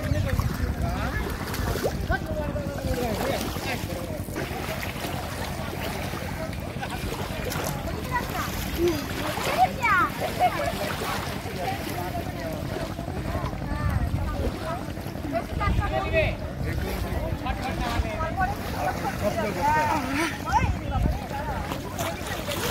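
Indistinct voices of several people talking and calling out in the background, over a steady low rush of wind on the microphone.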